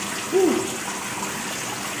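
Water running or trickling steadily, with one short voiced 'uh' about half a second in.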